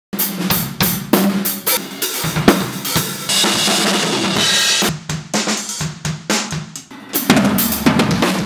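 Acoustic drum kit played hard: snare, bass drum and toms hit in quick succession with hi-hat and Zildjian K cymbals. A crash cymbal rings on from about three seconds in to about five seconds, then the drum hits resume.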